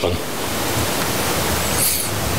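A steady, even hiss that starts abruptly as the talking stops and is about as loud as the speech, with a brief sharper hiss near the end.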